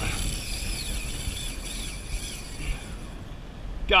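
Wind buffeting an action camera's microphone, a steady low rumble, over the wash of choppy seawater around the kayak.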